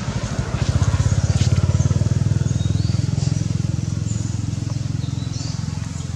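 A small engine running with a low, rapid pulse, swelling about a second in and slowly fading toward the end, as if passing by. A couple of faint high chirps sound above it.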